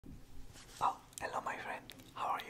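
A man whispering softly to the listener: only whispered speech, no other sound.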